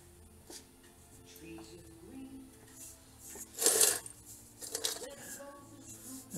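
Loose screws rattling and clinking in a stainless steel bowl, with one loud clatter about three and a half seconds in and a few smaller clinks after it.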